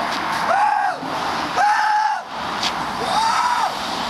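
A person's voice making about four high, drawn-out wordless calls, each rising and falling, roughly one every second and a half, over steady street traffic noise.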